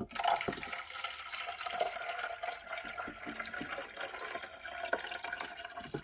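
Water pouring steadily into a clear plastic coffee-machine water reservoir. It starts abruptly and keeps going until near the end.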